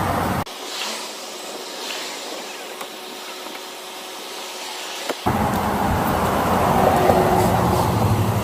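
Steady road traffic noise, a low rumble under a hiss. About half a second in the rumble cuts out abruptly, leaving only a thin hiss, and it returns about five seconds in.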